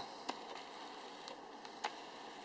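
Faint hiss with two small clicks, about a third of a second in and near the end, from hands handling the Sony camcorder.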